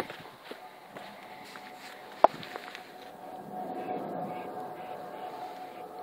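Handling noise with one sharp knock about two seconds in, as the small RC boat is reached for and retrieved from the water, over a faint steady hum.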